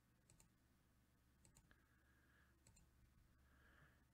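Faint computer mouse clicks over near silence, about four of them spaced roughly a second apart, each a quick small tick.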